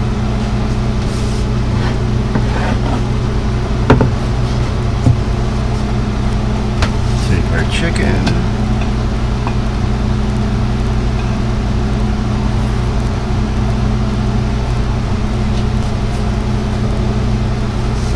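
Occasional clicks and taps of a knife against a cutting board and plate as cut chicken thighs are moved onto a plate of rice, over a steady low machine hum. The sharpest click comes about four seconds in.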